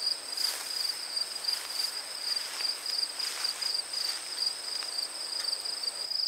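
Steady high-pitched insect chirping, a fast pulsing trill that never stops, with a few soft rustling steps along the garden path.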